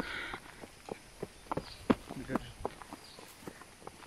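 Irregular footsteps, sharp scuffs and knocks coming unevenly, a few to the second.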